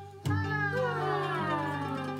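Live ensemble music: a sharp struck attack about a quarter second in, then a pitched note sliding slowly downward over steady held low notes.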